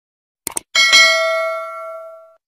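Subscribe-button sound effect: a short mouse click about half a second in, then a bright bell ding with several ringing tones that fades out slowly.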